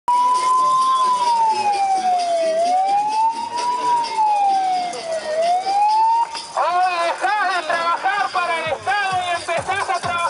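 An electronic megaphone siren wailing in a slow up-and-down sweep, about one rise and fall every three seconds. About six seconds in it gives way to a quicker string of short rising-and-falling tones.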